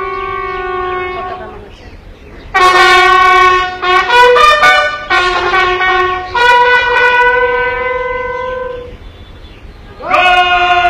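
A bugle playing a slow call of long held notes for the flag lowering. A held note fades out in the first two seconds. After a short pause, a new phrase of several notes begins about two and a half seconds in and ends on a long held note shortly before the end.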